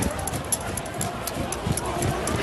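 Quick footsteps of a person running on pavement, a few steps a second, with indistinct voices of a street crowd around them.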